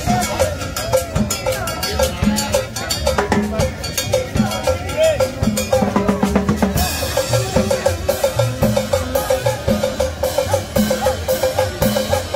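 Live combo band playing dance music: a drum kit and congas keep a steady beat under a melody line. About seven seconds in, a quick repeated note figure enters over the drums.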